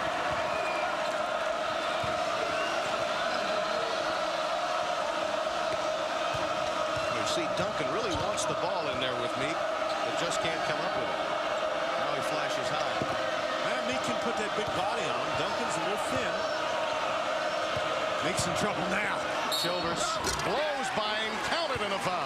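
Steady arena crowd noise during live basketball play, with the ball bouncing on the hardwood court and scattered sharp clicks and knocks from the game, thicker near the end.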